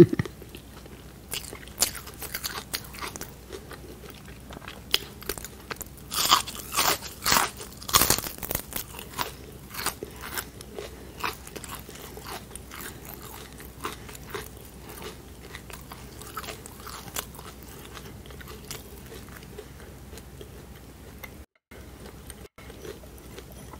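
Close-miked chewing of crisp shrimp tempura batter: sharp crunching, loudest and densest about six to eight seconds in, then thinning into softer chewing.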